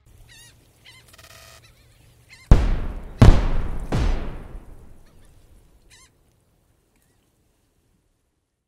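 Channel logo sting: three heavy booming impact hits, about two and a half seconds in and then at roughly two-thirds-second steps, each fading slowly. Faint warbling, honk-like calls come before the hits and once more near the end.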